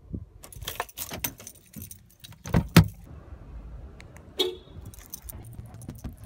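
A bunch of car keys jangling as they are handled at the ignition, with clicks in the first couple of seconds. About two and a half seconds in come two heavy thumps close together, then a short blip and a few lighter clicks.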